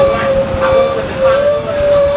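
Steady high whine from a 1993 Orion V transit bus's drivetrain, a Detroit Diesel 6V92 with an Allison HTB-748 transmission, heard on board. It sets in at the start, steps up slightly in pitch partway through and holds over a low rumble of the running bus.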